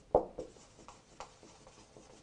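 A marker writing on a whiteboard: a few short pen strokes. The two loudest come in the first half second, and fainter ones follow.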